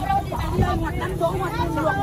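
Market chatter: several people talking at once around the stalls, over a low steady hum.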